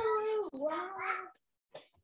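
A drawn-out, high-pitched wordless cry in two long notes, falling slightly in pitch and ending about a second and a half in.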